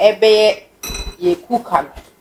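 A crockery bowl clinks about a second in, with a brief high ring, between bits of speech.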